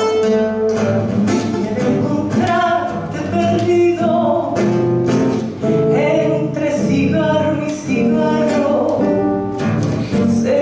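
A woman singing a tango, amplified through a microphone, accompanied by a classical guitar. She holds long notes over plucked and strummed chords.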